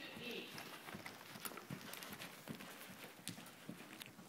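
Faint hoofbeats of a horse in a working jog, the western dressage two-beat trot, as a string of soft, slightly uneven knocks.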